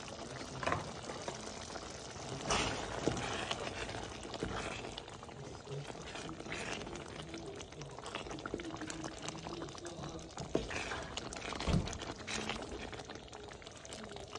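A thick pot of curried chickpeas bubbling at a simmer while a wooden spoon stirs and scrapes through it against the metal pot. There are a few sharp knocks along the way.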